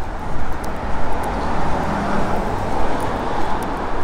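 City street traffic: a steady, fairly loud rush of road vehicles with no single sharp event.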